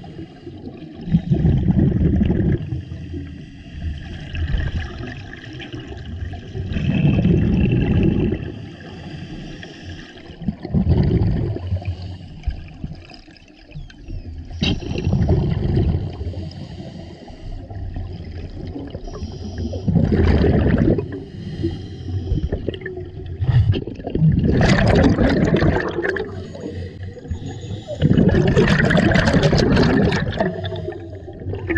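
Scuba diver breathing through a regulator underwater, heard close to the camera. Bursts of exhaled bubbles come about every four to five seconds, with quieter breaths between.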